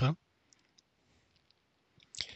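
The tail of a spoken word, then near silence with a few faint clicks.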